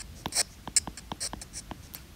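Stylus tip tapping and ticking on a tablet's glass screen while handwriting, a quick irregular run of small clicks, about six a second.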